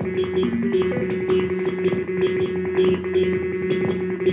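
Electronic music playing a fast, evenly repeating plucked pattern over a steady held drone.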